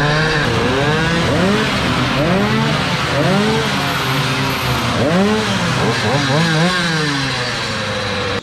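Several small two-stroke moped engines revved up and down again and again, their rising and falling pitches overlapping.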